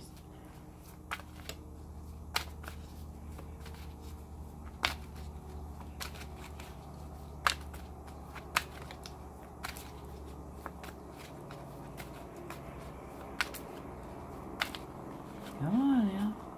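A deck of cards being hand-shuffled: soft rubbing of cards with irregular sharp clicks as cards strike each other. A steady low hum runs underneath.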